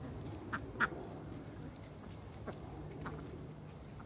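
Ducks quacking: four short quacks, the second, just under a second in, the loudest.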